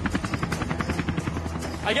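Helicopter rotor chopping in rapid even beats, about ten a second, over a steady low engine rumble.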